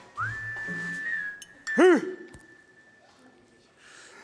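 A whistle-like tone that slides up and then holds one steady pitch for about three seconds, with a short loud rising-and-falling pitched sound about two seconds in.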